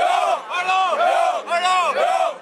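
A group of young men chanting loudly in unison: about four drawn-out shouted syllables, each rising and falling in pitch.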